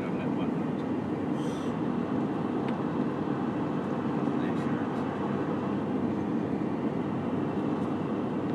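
Steady rumble of road and engine noise inside a moving car, with a few faint clicks.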